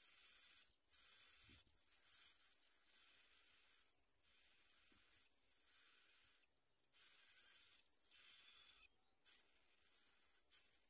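Bar-winged prinia nestlings begging: high, hissing calls in repeated bursts of about a second with short breaks, with a few thin chirps over them.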